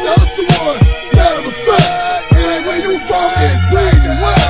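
Hip hop track playing from a vinyl record: a drum beat with hits about twice a second under a melodic line, with a heavier bass line coming in about three and a half seconds in.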